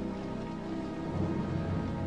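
Film soundtrack: steady, sustained low tones with a hissing wash like rain or sea spray under them.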